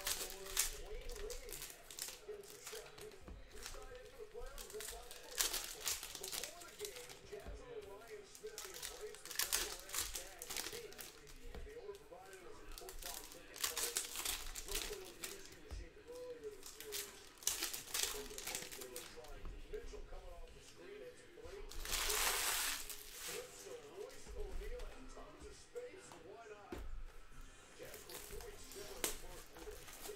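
Foil trading-card packs being handled and torn open: repeated crinkling and rustling of the wrappers, with one longer burst of tearing about three quarters of the way through.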